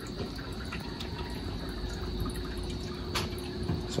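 Water trickling and dripping from a PVC drip-irrigation pipe into grow bags as the just-started water pump fills the line, over a faint steady hum. One short click comes about three seconds in.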